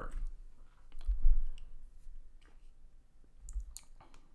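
A few isolated computer-keyboard key clicks spaced out over several seconds, with a dull low thump about a second in.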